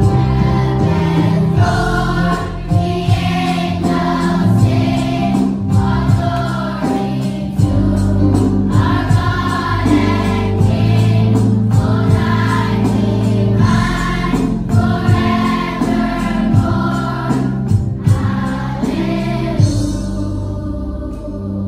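Children's choir singing a Christmas song in unison, in phrases, over sustained chords from an electronic keyboard.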